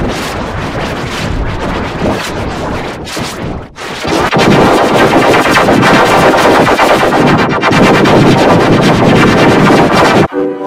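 Heavily effects-distorted audio of a film-company logo, most likely the crashing-wave sound of the Toei Company logo, turned into a loud, dense crackling noise with rapid stuttering pulses. It grows louder about four seconds in.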